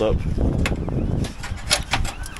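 Scaffold gear being handled: a sharp knock about two-thirds of a second in, then two quick clanks close together near the end, as an aluminium trestle and wooden boards are moved into place.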